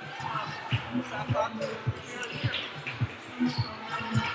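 Basketballs bouncing on a hardwood gym floor: repeated dull thumps, unevenly spaced at about two or three a second, as players dribble during warm-ups.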